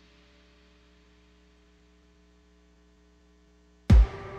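Background music fading out into a faint, steady hum. Just before the end, a loud electronic bass-drum beat starts a new dance-music track.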